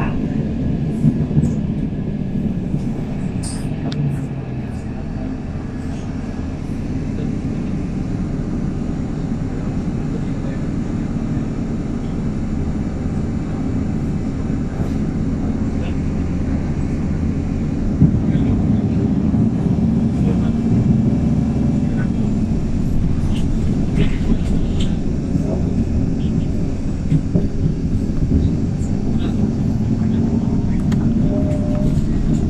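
Inside a 2019 MAN 18.310 compressed-natural-gas city bus with a Voith automatic gearbox on the move: a steady low engine and road drone with small clicks and rattles from the body. It grows a little louder in the second half.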